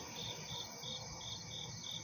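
A cricket chirping in a steady rhythm, about three short high chirps a second.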